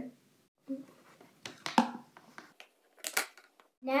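Thin plastic container lid being handled and worked, giving a few sharp plastic clicks and crackles, the loudest near the middle and about three seconds in.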